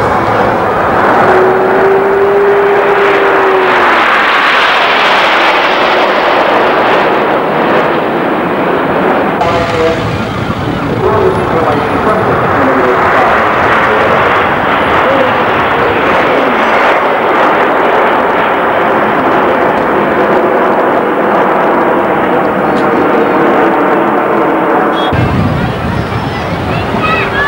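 Red Arrows BAE Hawk jets flying past in formation, a loud rushing jet noise that swells twice as the formation passes, with a brief steady whine early on.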